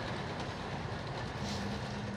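Tesla Cybertruck's motorized tonneau cover retracting along its rails over the bed: a steady mechanical rolling hum, with a low motor tone joining near the end.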